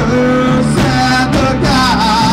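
Rock band playing live, with electric guitar and bass guitar, loud and continuous.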